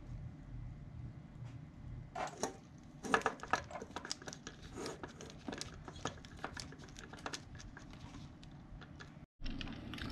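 Faint irregular clicks and taps of small parts and tools being handled at a workbench, over a low steady hum, with a brief drop to silence near the end.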